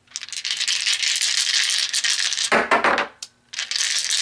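A handful of tarot dice shaken in cupped hands, a dense clatter of small clicks. The clatter stops for a moment about three seconds in, then starts again.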